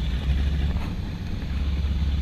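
Race boat's twin 825-horsepower engines running with a steady low rumble as the boat moves across the water, with wind buffeting the microphone.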